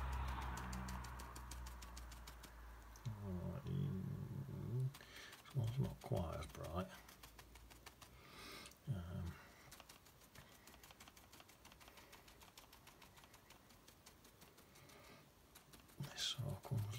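A man's voice making a few short, low, wordless sounds in the first half, over faint, quick, evenly spaced ticking that continues after the voice stops.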